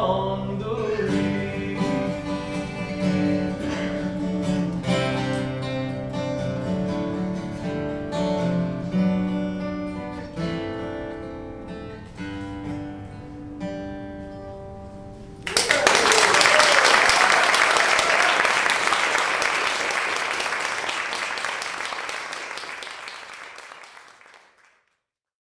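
Acoustic guitar playing the closing picked notes of a song after a final sung note at the start, the notes thinning out and growing quieter. About fifteen seconds in, an audience breaks into applause, louder than the guitar, which then fades away near the end.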